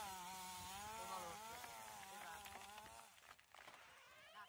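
Chainsaw cutting at high revs, its pitch wavering under load, dying away about three seconds in, after which only a few faint clicks are heard.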